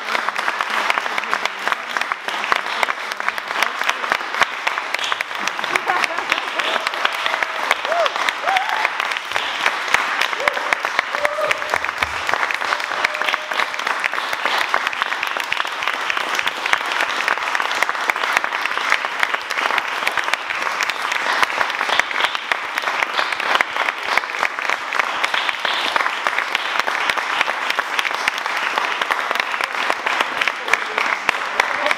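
Audience applauding, dense steady clapping that keeps up at an even level, with a few faint voices calling out about a third of the way in.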